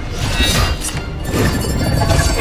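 Film score music with a few sharp metallic hits and crashes laid over it, the sound effects of a sickle-wielding fight.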